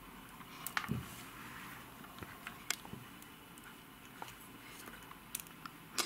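Quiet handling of an orchid plant: a few soft, scattered clicks and light rustles as hands and tweezers work at the base of the plant, taking away a broken leaf.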